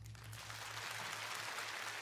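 Audience applauding as the song ends: the clapping builds over the first half second, then holds steady, with a low hum underneath.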